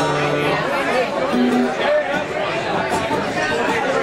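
Live acoustic band playing, with guitars and keyboard, while a crowd talks over the music.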